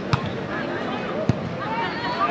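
Two sharp thuds of a volleyball being hit, the first just after the start and the second about a second later, over constant crowd chatter.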